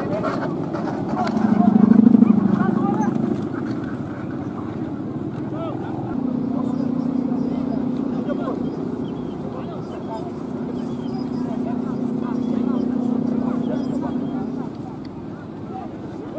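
Low droning hum of Balinese kite hummers (guangan, the taut bow strung across the top of a large kite), held at a steady pitch. It swells loudest about two seconds in, then returns steadily from about six seconds until shortly before the end, over a rush of wind.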